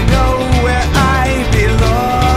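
Grunge-style rock song played by a band on guitars and drums, with a lead melody that slides up and down in pitch.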